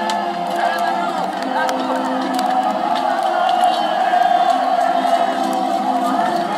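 Many men shouting and yelling together in a close-quarters melee, with frequent sharp clacks and knocks of weapons striking each other and armour.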